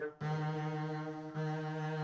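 Double bass played with the bow, holding one steady note that starts a moment in. About a second and a third in, the note dips briefly and starts again at the same pitch with a clear attack, as at a bow change.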